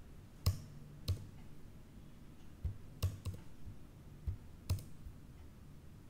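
A handful of separate, sharp computer keyboard and mouse clicks, spaced out rather than in a typing run, as code is selected and edited.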